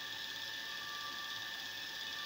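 Bench grinder's permanent split capacitor induction motor, capacitor removed and driven by a VFD at about 71 Hz (roughly 1,700 RPM), running a 2x36 belt grinder attachment steadily: an even whir with a faint steady high whine.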